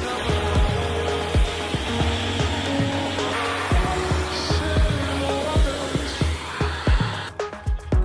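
Background music with a steady beat over the hiss of a Kränzle 1152 TST pressure washer's lance spraying water onto the car, which cuts off about a second before the end.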